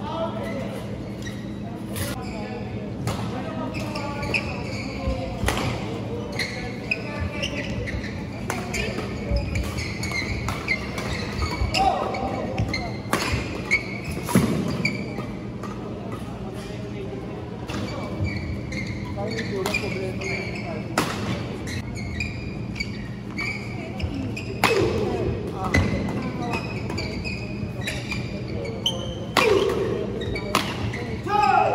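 Badminton rackets striking a shuttlecock: sharp hits at irregular intervals, with voices echoing in a large hall and a steady low hum underneath.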